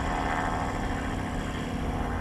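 Zeppelin NT airship's engines and propellers running overhead with a steady, even hum.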